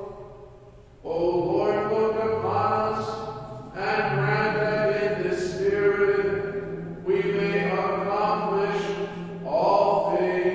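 A man's voice chanting a liturgical prayer solo, in about four long sung phrases held on steady pitches with short breaths between them.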